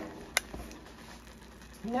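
A single sharp click about a third of a second in, over a faint steady low hum.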